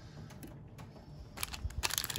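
Quiet handling of trading cards and a foil card pack: scattered soft clicks and rustling. About one and a half seconds in, this turns into a dense run of crinkling clicks.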